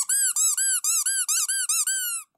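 Squeaker in an Anpanman SL Man squeeze toy squeaking as it is pressed over and over. The short squeaks each rise and fall in pitch and come about five a second.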